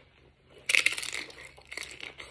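Tortilla-chip nacho crunching as it is bitten into and chewed: a sudden loud crunch about two-thirds of a second in, then a few smaller crunches near the end.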